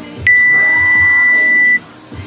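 Gym workout timer's electronic beep: one steady high tone of about a second and a half that starts sharply and cuts off, sounding as the workout time runs out at the 12-minute mark.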